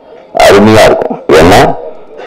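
A man's amplified voice through a PA microphone: two loud, drawn-out shouted bursts about half a second apart.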